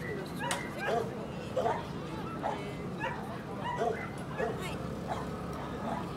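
A dog yipping over and over, short high calls coming about once or twice a second, over background chatter.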